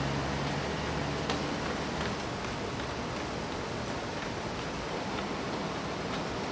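Steady hiss of outdoor street ambience, with a low hum fading out in the first second or so and a few faint ticks.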